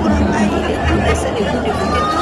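Voices talking and chattering over background music with a pulsing bass beat.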